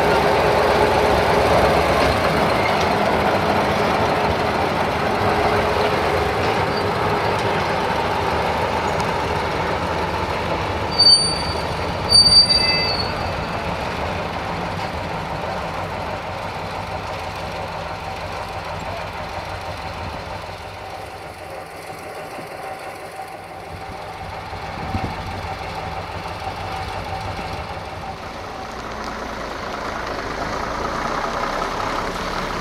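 Engine of a UAM-215 track maintenance vehicle running as it hauls a TAKRAF rail crane in shunting, loudest at first and slowly fading as it moves away. Two brief high squeals come about eleven and twelve seconds in.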